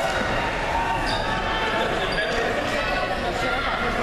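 Overlapping voices echoing in a gymnasium, with a basketball bouncing on a hardwood court.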